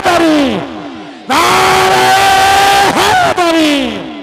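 A man shouting a drawn-out religious slogan into a microphone over a loud PA system, each call held on one steady pitch for one to two seconds, with a short break about a second in.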